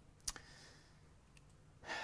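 A quiet pause with one sharp click about a quarter second in, a soft breath, a fainter click later, and a man's voice starting again near the end.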